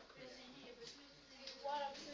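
Faint strokes of a marker writing on a whiteboard, with a brief, quiet voice in the room near the end.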